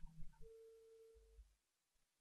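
Near silence: studio room tone, with a faint steady pure tone lasting about a second.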